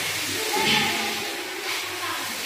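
Steady hiss, typical of steam feeding the jacketed kettles of a steam-operated mawa (khoya) making machine.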